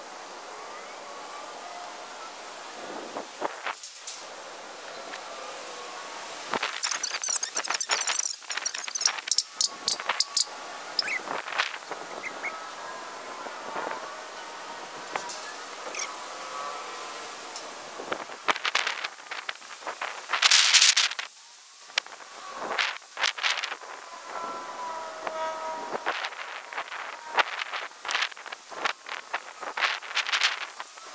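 Aerosol can of gloss black Rust-Oleum spray paint hissing in many short bursts, with one longer spray of about a second about two-thirds of the way through. Faint wavering tones run underneath.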